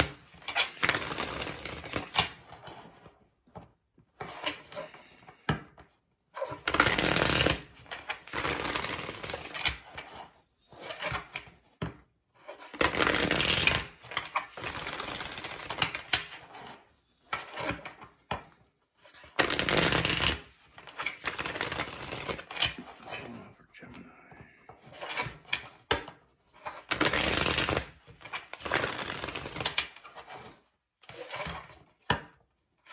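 An Inkromancy tarot deck being shuffled by hand: a louder flurry of shuffling about every six or seven seconds, with quieter rustling and ticking of the cards between.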